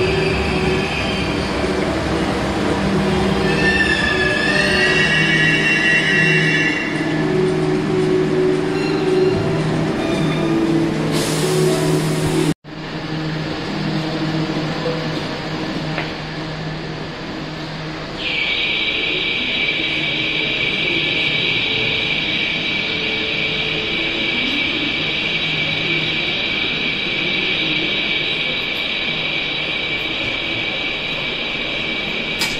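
Buenos Aires Subte train standing at a station, its equipment giving a steady low electrical hum. Brief high metallic squeals waver between about three and seven seconds in. The sound cuts out abruptly about twelve seconds in; after that the hum goes on, and a steady hiss joins it from about eighteen seconds in.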